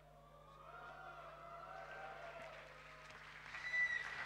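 Faint, distant talking picked up off-microphone, over a steady low electrical hum.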